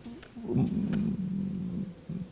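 A man's drawn-out, creaky-voiced hesitation sound, a low 'ăăă' held for about a second and a half while he searches for a word.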